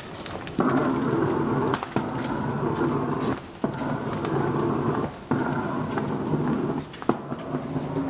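Small wheels of a rolling bag rumbling along a hard floor with a steady hum. It comes in stretches of about one to two seconds, broken by short dips and sharp clicks as the wheels cross joints in the floor.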